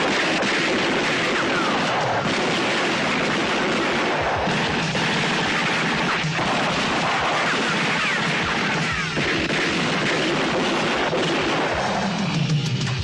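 Sustained movie gunfight: rapid, continuous rifle and machine-gun fire with many overlapping shots, mixed with a music score.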